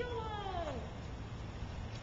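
A young child's long, drawn-out vocal cry, held at a high pitch and then sliding down, ending about a second in.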